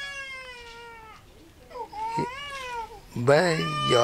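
Two drawn-out, high-pitched cries: the first falls slowly over about a second and a half, and a shorter second one comes about two seconds in. A man's voice starts speaking near the end.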